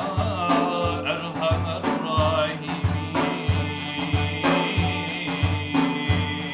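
Sufi devotional music in makam Hüseyni performed by a male ensemble: a solo melody with wavering pitch over a steady low rhythmic pulse of about three beats every two seconds.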